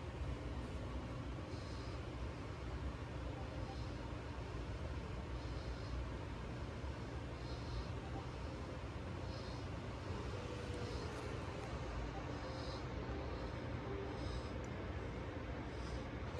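Low steady background hum and hiss with faint, short, high-pitched ticks about every two seconds.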